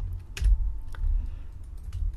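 A few computer keyboard keystrokes and clicks as a value is typed into a field, the sharpest about half a second in and another near one second, over a low rumble.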